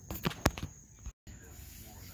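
A few light clicks in the first half second, then a brief dead-silent gap about a second in, over a faint, steady, high-pitched background tone.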